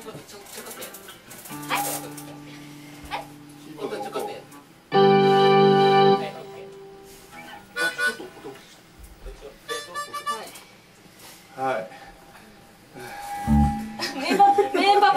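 Harmonica playing short held chords: a softer one about a second and a half in, then a loud one about five seconds in that lasts about a second, with faint talk and stray sounds in the gaps.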